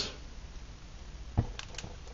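Quiet steady hiss with one light knock about one and a half seconds in, then a couple of fainter ticks. The knocks come as the wooden lighting stick is drawn out of the aluminium stove around a just-lit methanol burner.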